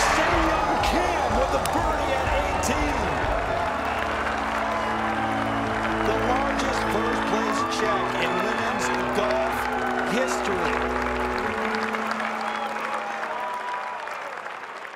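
Background music with long held notes, mixed with a crowd cheering and applauding. The low notes of the music stop about eleven seconds in, and the sound fades toward the end.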